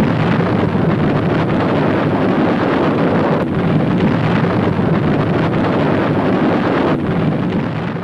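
Sustained roar of a nuclear explosion sound effect: a loud, steady, deep rumbling noise with no pitch to it.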